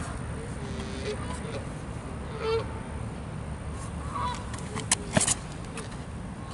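Geese honking now and then, several short calls over a steady low rumble of wind. A few sharp knocks come near the end.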